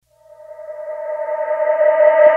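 Background music beginning: one sustained note with a stack of overtones fading in and growing steadily louder.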